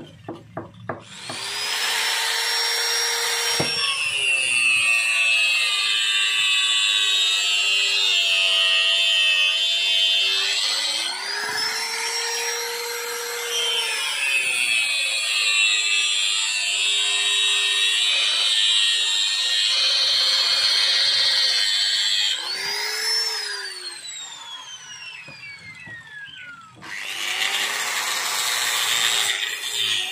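Electric angle grinder spinning up and cutting a strip of wood with a cutting disc, its motor whine steady under load, with a brief let-off and pick-up partway through. Later it is switched off and coasts down in a long falling whine, and near the end a second angle grinder fitted with a flap sanding disc starts up and sands wood.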